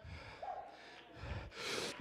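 A man breathing in through a handheld microphone, a noisy rush of breath that grows louder in the last half second. Faint room noise under it.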